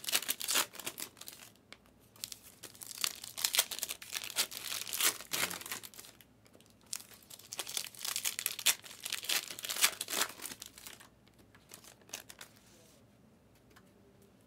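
Plastic wrapping crinkling and tearing in three flurries with short pauses between them. It falls off about three-quarters of the way through.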